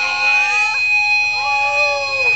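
A steady, high-pitched feedback whine from the stage amplification, with a lower pitched tone sliding and bending under it twice.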